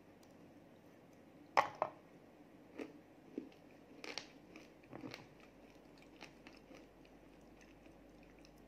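Close-up bite into a chocolate chip cookie shot with crunchy rainbow sprinkles: a sharp double crunch about one and a half seconds in, then chewing with a string of smaller crunches that thin out by about two-thirds of the way through.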